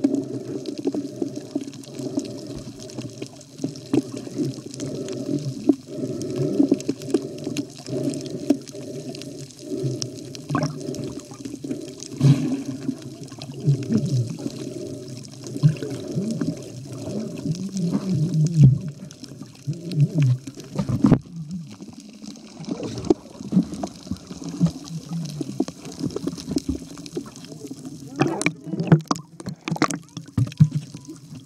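Muffled water sloshing and gurgling around a camera in the water, in uneven surges.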